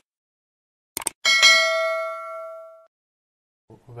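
Subscribe-animation sound effect: two quick clicks about a second in, then a single bright bell ding that rings out and fades over about a second and a half.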